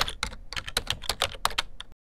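Computer keyboard typing: a quick run of key clicks, about seven a second, that stops abruptly near the end.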